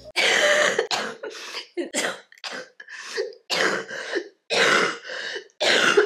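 A woman coughing in a long fit of about ten short, rough coughs in bouts, a chesty cough from recovering from influenza A.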